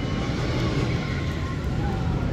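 Skyrush steel roller coaster train running along its track, a steady low rumble.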